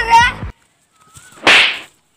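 A sharp whip-crack swish, about 0.4 s long and the loudest thing here, about one and a half seconds in: a comedy sound effect marking a blow that knocks a man to the ground. Before it, a laughing voice over music cuts off abruptly about half a second in.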